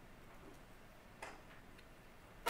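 Near silence: quiet room tone, with one faint sharp click a little over a second in and a fainter one near the end.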